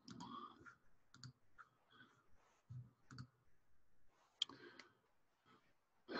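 A few faint, scattered computer mouse clicks over near silence, the sharpest about four and a half seconds in.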